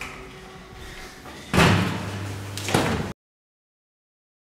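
A loud, sudden slam about one and a half seconds in that carries on as a noisy rumble, with a second sharp hit about a second later. The sound then cuts off abruptly to dead silence.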